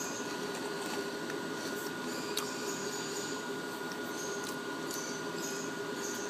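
Steady background hum and hiss with a faint constant tone, and a few faint ticks.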